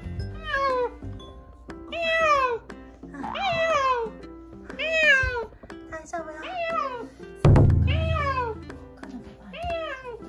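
A rescued stray cat meowing repeatedly from inside a soft pet carrier, about seven meows, each falling in pitch, roughly one every second and a half. A single loud thump comes about three-quarters of the way through.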